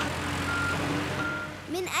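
Cartoon digger's reversing beeper sounding about every 0.7 s over a low engine hum and a steady hiss of water spouting from a broken underground pipe.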